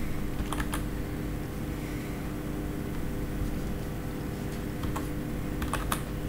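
Computer keyboard keystrokes: a couple of clicks just after the start, then a short run of clicks near the end, as a word is typed. A steady low hum runs underneath.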